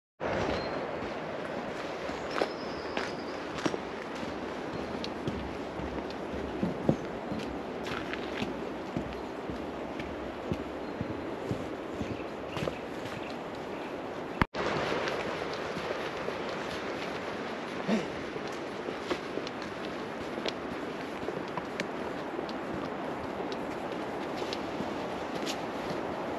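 Footsteps walking on a dirt woodland path covered in dead leaves: irregular soft crunches over a steady outdoor background noise, which breaks off for an instant about halfway.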